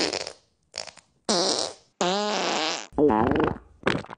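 Men groaning and grunting as they lower themselves into and push up out of lawn chairs: about five short, drawn-out effort noises with wavering pitch, separated by brief gaps.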